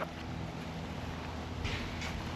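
Quiet outdoor background noise with a steady low hum, and a brief soft rustle near the end.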